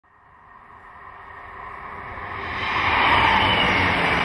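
Diesel multiple-unit passenger train approaching and passing, its rushing sound swelling from near silence to loud over about three seconds.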